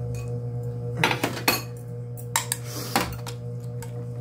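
Stainless-steel chopsticks clinking against a porcelain bowl and a metal pot: several short, sharp clinks during a meal, over a steady low hum.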